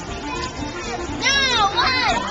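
Young children's voices chattering, with one loud, high, swooping voice about a second in, over background music.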